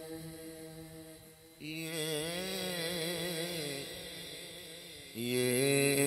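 A man's voice chanting a naat melody without clear words: long drawn-out vowels with wavering, ornamented pitch. A held note fades out, a new phrase starts about one and a half seconds in, and a louder held note comes in near the end.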